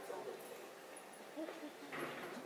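Faint, brief fragments of a person's voice with sliding pitch, a couple of short sounds about half a second in and again past the middle.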